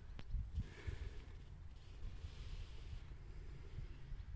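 Wind buffeting a phone microphone outdoors: a low, uneven rumble with a faint hiss.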